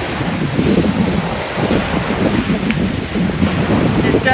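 Wind buffeting the microphone over choppy saltwater waves, a loud, uneven, gusting rush weighted to the low end.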